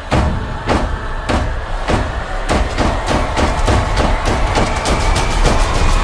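Trailer music build-up: heavy drum hits that start about a second and a half apart and speed up steadily into a fast roll near the end.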